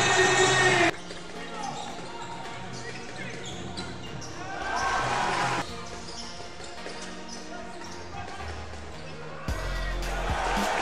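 Basketball game sound: a ball dribbling on a hardwood court and voices in the arena, under steady background music. There are two louder swells, one at the start and one about five seconds in.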